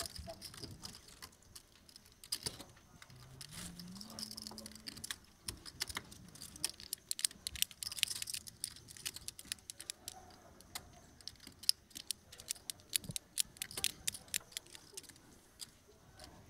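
Poker chips clicking and clattering as players riffle and restack them at the table, in quick irregular clicks that grow denser in the second half.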